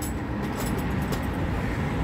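Steady low rumble of a vehicle engine running, with a few faint clicks over it.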